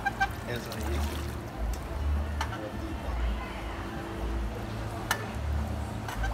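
Water splashing and dripping as a swimmer climbs out of a pool up a metal ladder, with wind rumbling on the microphone.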